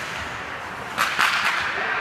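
Ice hockey sticks and puck clacking: three or four sharp cracks in quick succession about a second in, over a steady background of rink noise.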